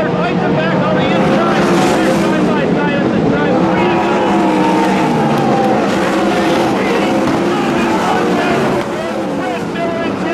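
Engines of several 410 sprint cars racing on a dirt oval, their pitch rising and falling as the drivers get off and back on the throttle through the turns. The middle of the stretch holds one steady, sustained engine note, and the sound eases slightly near the end.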